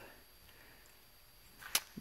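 Quiet room tone, then one sharp click near the end.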